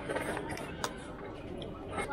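A single sharp click a little less than a second in, over faint steady background noise.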